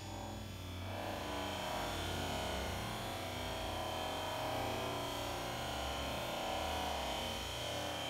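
Brushed electric motor and gearbox of a Traxxas TRX-4 scale crawler whirring steadily as the truck creeps over rocks, starting about a second in. Steady background music runs underneath.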